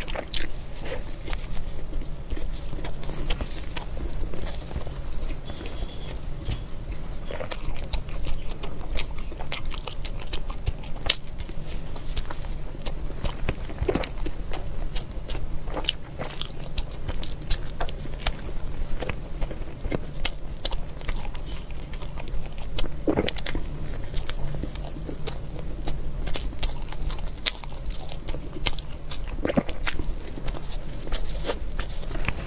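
Close-miked eating sounds: a person biting into and chewing a soft bread loaf with an egg crust, with many small sharp mouth clicks. A steady low hum runs underneath.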